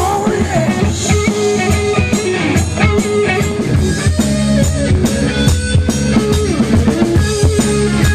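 Live rock band playing: a drum kit keeps a steady beat with bass drum and snare hits under bass guitar and electric guitar.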